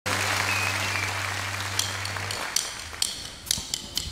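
Studio audience applauding, the clapping fading over the first couple of seconds and thinning out to a few scattered, sharp single claps.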